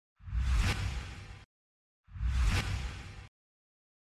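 Two identical whoosh sound effects with a deep low rumble under them, each swelling and fading over about a second, the second starting about two seconds in.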